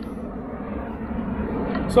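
Steady low wind rumble on the microphone.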